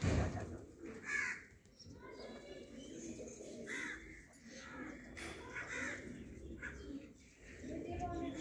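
Domestic pigeons cooing in a low, continuous murmur, with several short, harsher, higher-pitched calls over it and a thump right at the start.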